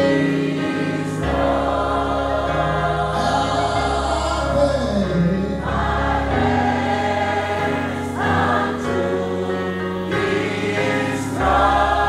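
Large gospel choir singing held chords together, the chords changing every second or two over a steady low bass.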